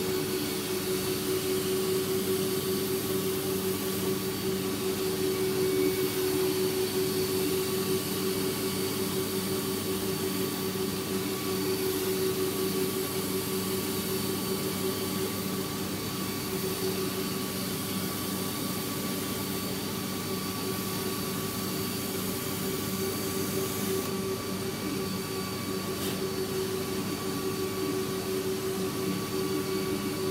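Carpet extraction machine running steadily, its vacuum drawing through a stainless steel floor wand as it is passed over carpet: a continuous hum with a faint high whine above a rushing suction noise.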